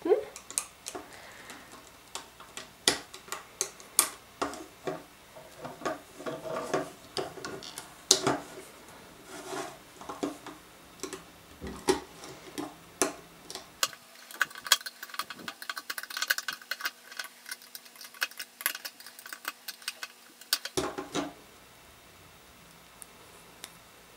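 Rubber bands being worked off the plastic pegs of a Rainbow Loom with a metal crochet hook: irregular small clicks and snaps of bands and hook against the pegs, coming quicker and denser in the last several seconds.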